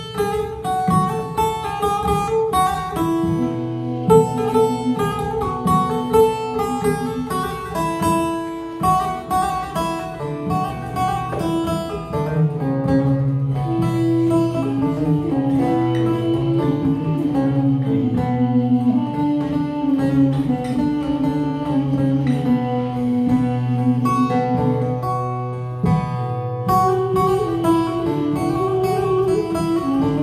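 Instrumental Turkish folk music: a bağlama plucked over a steady low drone while a wind instrument plays a slow melody in long held notes.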